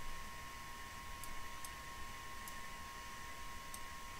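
A few faint computer mouse button clicks, spread out, over a faint steady high-pitched hum.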